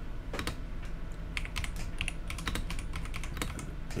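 Computer keyboard being typed on: a run of quick, uneven keystrokes over a low steady hum.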